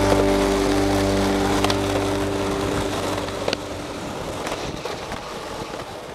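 A held musical chord fades out over the first couple of seconds, leaving skateboard wheels rolling on rough street asphalt, with a few sharp clacks, growing gradually quieter.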